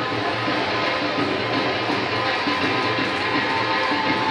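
Background music laid over the footage, steady throughout.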